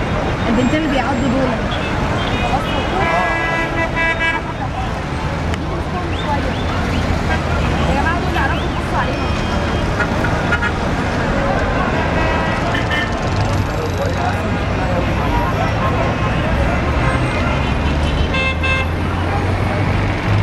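Voices of people talking and shouting over steady city traffic, with a car horn honking about three seconds in and again near the end.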